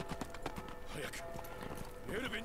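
Horse hooves galloping, a quick irregular clatter of knocks, with soft background music underneath.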